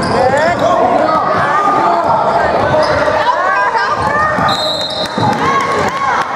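Basketball game sounds on a hardwood gym court: sneakers squeaking in many short chirps and a ball bouncing, with players' and spectators' voices. A brief steady high whistle sounds near the end.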